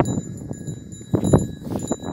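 Dull thumps and rustling from a handheld phone being swung around, over thin, steady, high ringing tones.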